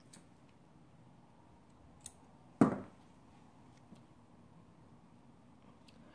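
Small craft scissors snipping ribbon: a few faint, short clicks over quiet room tone, with one louder short sound about two and a half seconds in.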